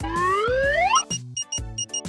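Cartoon thermometer sound effect: a rising whistle climbing for about a second, then rapid high electronic beeping as the reading peaks at a high fever, over children's background music.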